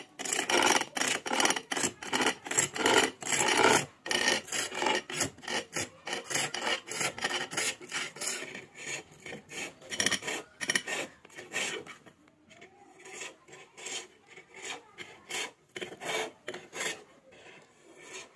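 A chisel cutting the turning wooden head of a masher on a bow lathe, in a quick back-and-forth rhythm of strokes, about two or three a second. The strokes are louder over the first few seconds and lighter later on.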